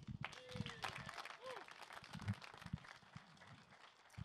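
Light, scattered audience applause, faint and irregular, with a brief voice or two in the background.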